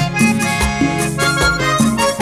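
Vallenato band music: a diatonic button accordion playing the melody over a bass line that changes note about every half second, with steady percussion.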